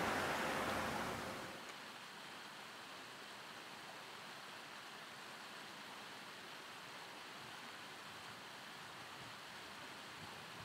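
Wind noise on the microphone while cycling, dropping away about a second and a half in. After that comes a steady, faint rush of water pouring through a concrete sluice channel.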